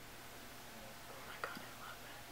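A person's faint whisper with a short click about one and a half seconds in, over a low steady hiss.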